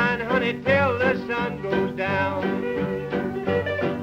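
1940s Western swing music playing from an old record, with a steady dance beat under a lead line that wavers in pitch with heavy vibrato.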